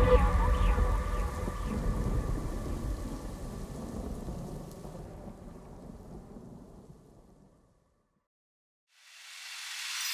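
A noisy, rumbling wash like rain and thunder fades out slowly at the end of a song and dies away about seven and a half seconds in. After a short silence, a rising swell of noise comes in about nine seconds in, leading into the next song.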